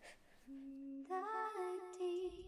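A voice humming a slow tune: a single held note begins about half a second in, then the melody steps up and down through a few notes.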